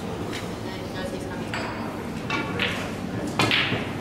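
Pool balls clicking against each other: a few sharp clicks with a brief ring, the loudest about three and a half seconds in, over background chatter in the hall.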